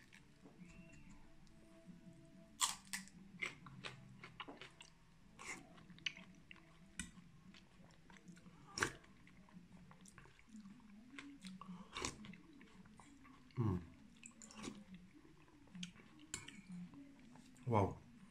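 A person eating: chewing, with irregular sharp crunches every second or two from biting into raw green onion stalks.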